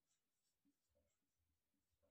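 Near silence, with faint short squeaks and scratches of a marker writing on a whiteboard.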